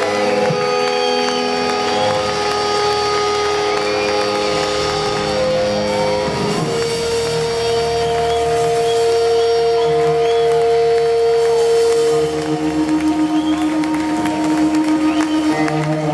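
A live rock band plays an instrumental passage of long held notes on guitars and keyboard. Near the end the sound starts to pulse evenly, about four times a second.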